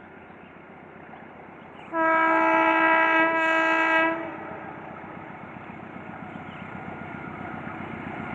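Diesel locomotive horn of an approaching passenger train: one loud blast of about two seconds, starting about two seconds in. After it the rumble of the oncoming train grows steadily louder.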